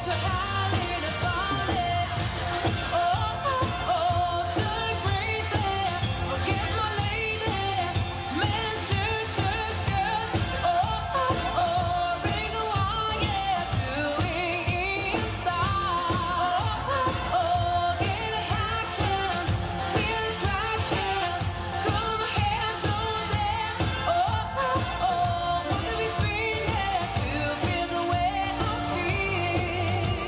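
A live dance band playing a pop song with a steady beat, a woman singing lead into a handheld microphone.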